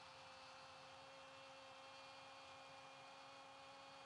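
Near silence: room tone with a faint steady hum, one low tone and another an octave above it, unchanging throughout.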